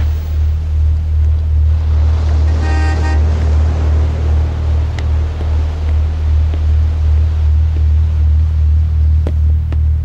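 A steady deep rumble, with a short pitched toot about three seconds in and a few sharp clicks near the end.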